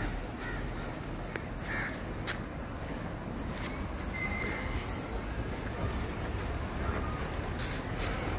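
Several short bird calls in the first two seconds, over a steady low outdoor rumble.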